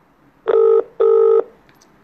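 Telephone ringback tone on an outgoing call, played over a phone's speaker: one double ring, two short steady beeps with a brief gap between them, as the call waits to be answered.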